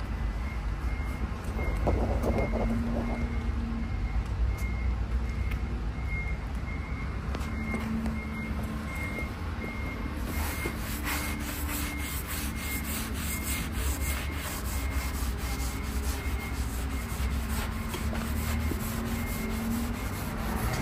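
Oil finish being rubbed by hand into the surface of a Japanese elm slab. In the second half it turns into a steady run of back-and-forth wiping strokes, a few a second. A low rumble and a faint beep repeating about twice a second run underneath.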